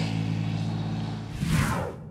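A Mini Cooper's four-cylinder engine running at a steady speed as the car drives along, then a short whoosh about a second and a half in that fades away.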